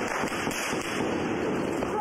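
Steady outdoor noise, with wind on the microphone and faint distant voices.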